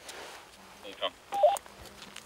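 Handheld two-way radio: a short burst of static hiss, then a brief electronic beep that steps down in pitch about a second and a half in.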